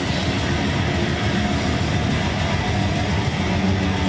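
Death metal band playing live: distorted electric guitars, bass guitar and drums in a loud, dense, steady passage.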